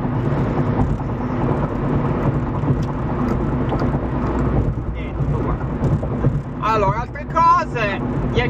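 Steady road and engine noise inside the cabin of a car cruising at highway speed. A man's voice starts speaking near the end.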